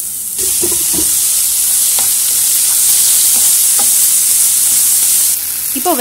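Chopped onions and ginger-garlic paste sizzling in hot oil in a nonstick frying pan, stirred with a wooden spatula that knocks the pan a few times. The sizzle grows louder about half a second in and drops back shortly before the end.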